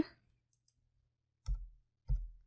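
A single soft computer-keyboard keystroke about one and a half seconds in, most likely the Enter key opening a new line in the code editor. The rest is near silence.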